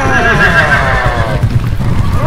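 Horse whinny sound effect: one quavering call that falls in pitch and fades about a second and a half in, over a constant low rumble.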